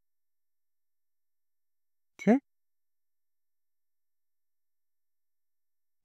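Dead silence, broken once about two seconds in by a man briefly saying "Okay."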